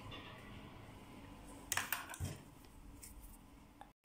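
Faint handling sounds over quiet room tone: a brief rustle or click about halfway through and a soft knock just after.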